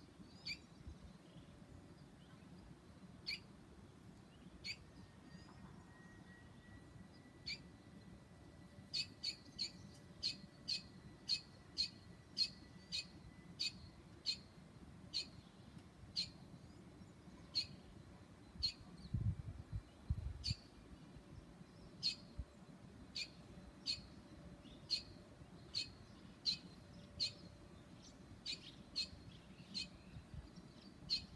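Barn swallow chirping: short, sharp calls repeated at irregular intervals, coming quickly, about two a second, for a few seconds about a third of the way in. A brief low rumble a little past the middle.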